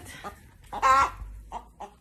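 Hen calling: one loud squawk about a second in, then a run of short clucks.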